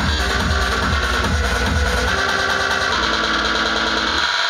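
Loud electronic dance music from a DJ set over a club sound system, with a steady kick and deep bass. The bass eases off about two seconds in while sustained synth tones carry on.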